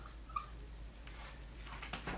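Dry-erase marker writing on a whiteboard: faint strokes with a brief squeak about a third of a second in.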